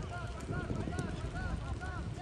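Faint distant voices talking, in short broken phrases, over a steady low outdoor background rumble.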